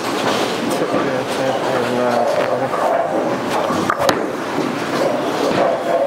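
Bowling alley din: a steady low rumble of balls rolling on the wooden lanes under background voices, with one sharp crack about four seconds in.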